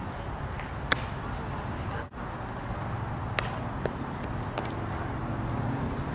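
Several short sharp cracks or impacts a second or more apart, the loudest about a second in, over a steady low background rumble.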